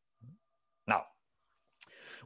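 A pause in a man's talk, mostly silent, broken about a second in by one short spoken word, "Now."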